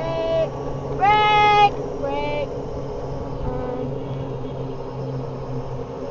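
Golf cart running with a steady low hum while riding over a gravel road, with a girl's short high-pitched voice sounds over it, the loudest about a second in.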